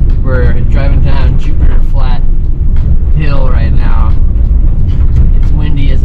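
A person talking in short phrases over a loud, steady low rumble.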